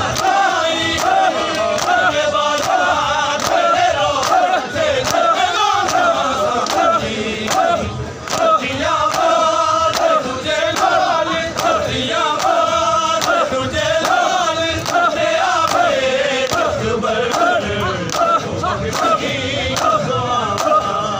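Shia mourners' matam: a crowd of men chanting a noha together while striking their bare chests with their palms in unison, a sharp slap about once a second, keeping the beat.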